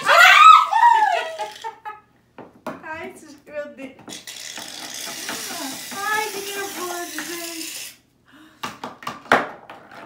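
A loud cry and laughter, then an aerosol can of shaving foam hissing steadily for about four seconds as it sprays foam, followed by a few sharp clicks and knocks near the end.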